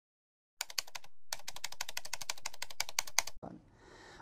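Rapid computer-keyboard typing clicks, about a dozen keystrokes a second, with a brief pause about a second in, stopping abruptly about three and a half seconds in.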